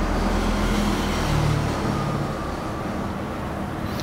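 Steady background rumble and hiss with a faint low hum, holding level throughout and easing slightly toward the end.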